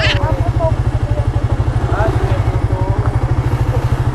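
Suzuki GSX-R150's single-cylinder engine idling, a steady rapid low pulse.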